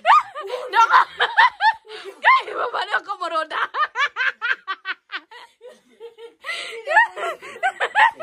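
A person laughing in many short, high-pitched bursts, with a brief lull about two-thirds of the way through.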